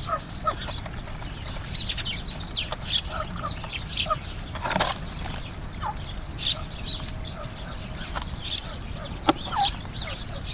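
Sparrows chirping repeatedly, many short quick calls throughout, with a few sharp taps of pheasants pecking seed from a wooden feeding tray.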